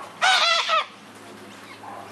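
Long-billed corella giving one loud, wavering squawk that lasts a little over half a second, starting just after the start.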